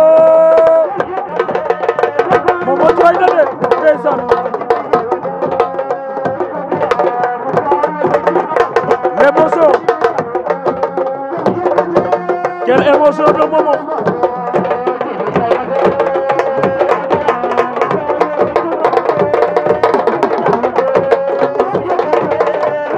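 A sabar drum ensemble playing fast, dense rhythms of stick and open-hand strokes on the drumheads, with voices singing over the drumming.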